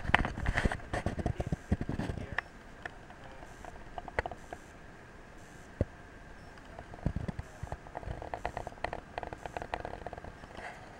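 Canoe paddling: irregular knocks, clicks and splashes from paddle strokes against the hull and water, in a burst at the start and again from about seven seconds in, with a quieter stretch between.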